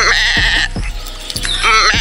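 A goat's bleat, one wavering cry lasting under a second at the start, over music with a steady beat. A man's voice comes in near the end.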